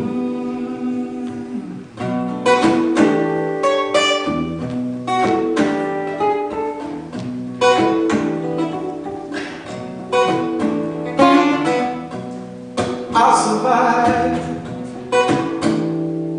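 Steel-string acoustic guitar played solo, plucked notes and chords ringing out one after another in a steady instrumental passage.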